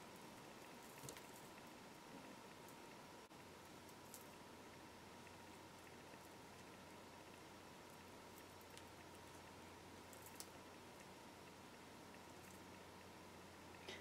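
Near silence: faint room tone with a steady low hum, and a few faint ticks of thin 28-gauge craft wire being wrapped by hand.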